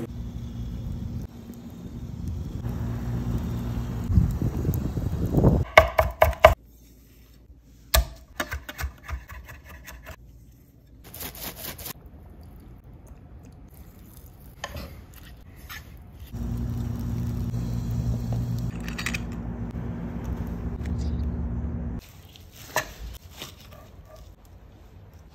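Chef's knife chopping garlic on an end-grain wooden cutting board, in quick runs of sharp strokes, between stretches of a steady low hum; a few more knife cuts on the board near the end.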